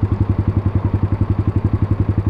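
Suzuki DR200's single-cylinder four-stroke engine idling at a standstill, a steady, even pulse of about eleven beats a second.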